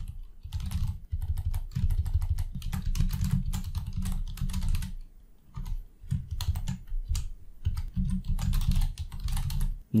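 Computer keyboard typing: quick runs of keystrokes, pausing briefly about halfway through.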